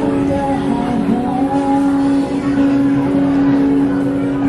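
Amplified singing over an acoustic guitar in a live street performance. A short sung phrase leads into one long held note that begins about a second and a half in and lasts nearly to the end.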